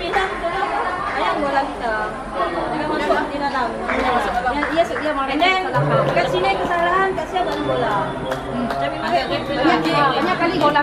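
Several women talking at once in a huddle, overlapping chatter with music underneath.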